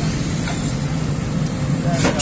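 JCB tracked excavator's diesel engine running steadily: a low, even drone.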